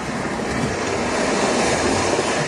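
A loud, even rushing noise that swells steadily louder.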